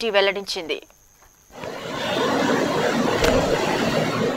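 Floodwater rushing along a flooded street: a steady rush of moving water that fades in about a second and a half in, after a few words of narration.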